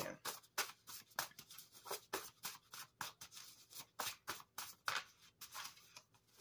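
A stack of coloured paper cards being shuffled by hand: a quick, irregular run of soft flicks and slaps, three or four a second.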